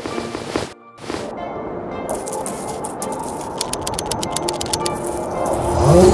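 Added sound effects with background music: a few sharp taps, then a dense crackling, clicking rattle that grows steadily louder over several seconds, ending in the start of a low rumble.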